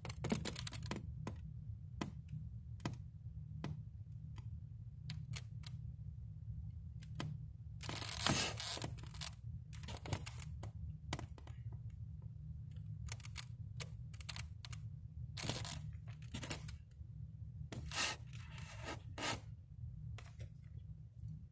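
Irregular light clicks and scratches from handling a penlight against the egg tub, over a steady low hum.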